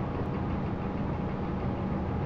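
A steady low background hum with an even hiss, engine-like, with no sudden events.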